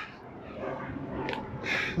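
Low outdoor background noise during a pause, with one small click a little over a second in and a short hiss near the end.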